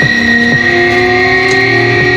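Black metal played live, instrumental: distorted electric guitar holding long sustained notes that shift in pitch, with occasional sharp hits from the drums.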